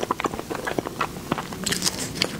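Close-miked wet chewing and mouth clicks of a person eating a soft dessert, with a louder bite into it near the end.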